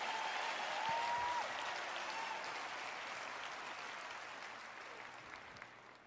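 An audience applauding, with a voice or two calling out near the start. The applause dies away gradually.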